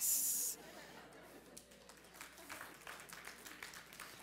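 A sung closing word ends in a brief, loud hissing 's', then faint voices murmur with small scattered sounds in a hall.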